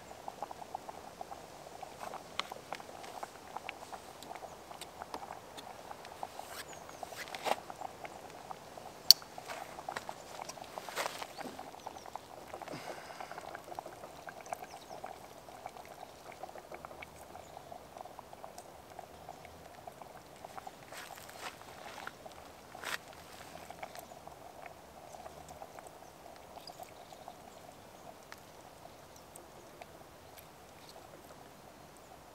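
Lentil soup simmering in a metal mess-kit pot over a spirit burner, with a steady fine bubbling. A few sharp clicks and knocks come through it, the loudest about a third of the way in.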